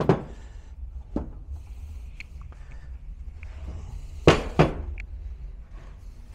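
Large LiFePO4 prismatic battery cells being set down and shifted against each other on a workbench: a knock at the start, another about a second in, and two loud knocks close together a little past four seconds, with handling rustle in between. A low steady hum runs underneath.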